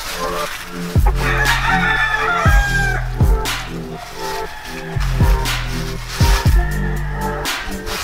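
A gamefowl rooster crows about a second in, over background music with a steady bass beat.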